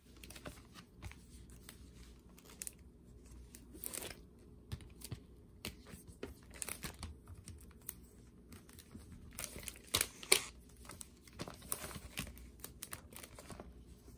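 Clear plastic sleeve and cardboard record jacket of a vinyl LP being handled: irregular crinkling and rustling with sharp crackles, loudest about ten seconds in.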